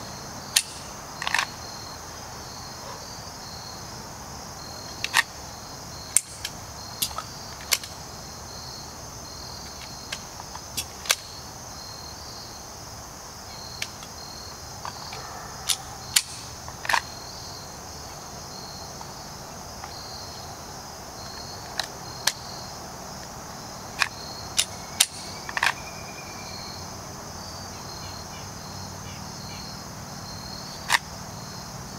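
Scattered sharp clicks and clacks of a semi-automatic pistol being handled during draw-and-reload practice: magazine changes, slide work and holstering, with no shots fired. Underneath, a steady high-pitched pulsing chorus of insects.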